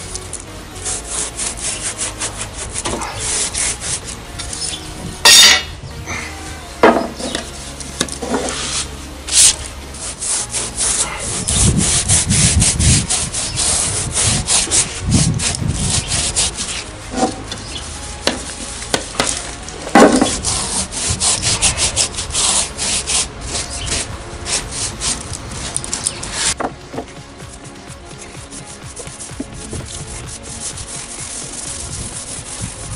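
A stiff paintbrush scrubbing wood finish onto larch floorboards in quick back-and-forth strokes over the bare wood, with a few sharp knocks in between, the loudest about five seconds in and again near the middle.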